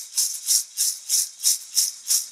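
A hand rattle shaken in a steady rhythm, about three shakes a second.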